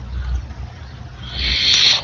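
Open voice-chat microphone noise: a low, uneven rumble, then a short hiss, like a breath into the microphone, in the last second.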